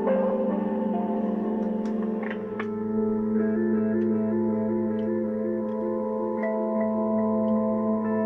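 Ambient electronic music played live on studio synthesizers: sustained drone tones with a steadily pulsing repeated note, changing texture about two and a half seconds in. It is recorded through a 1974 AKG D99c binaural dummy-head microphone, which adds its own lo-fi grain.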